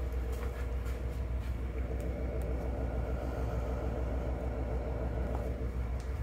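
A steady low rumble with a constant hum. Light footsteps fall about twice a second over the first couple of seconds.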